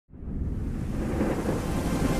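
Deep, noisy rumble of an intro sound effect, fading in from silence and slowly building; faint musical tones begin to enter near the end.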